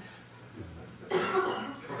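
A person coughing once, loud and short, about a second in, after a brief lull.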